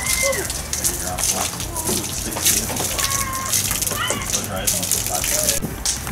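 A steady crackly spatter of water, with faint voices in the background.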